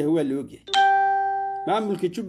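A single bell-like chime: a bright tone that starts suddenly, then fades over about a second, cut short when a man's speech resumes.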